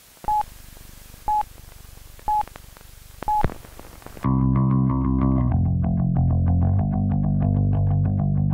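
Four short beeps of one pitch, a second apart, like a countdown, then about four seconds in a punk song's intro starts: a low, distorted electric guitar riff played alone and picked quickly, dropping in pitch a little over a second later.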